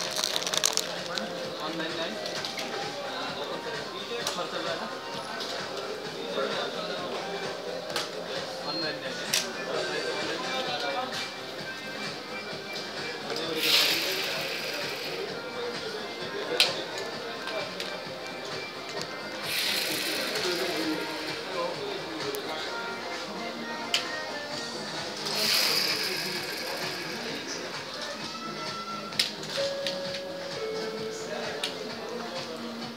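Shop ambience: background music and indistinct voices, with a few sharp clicks and three short bursts of hissing noise about six seconds apart.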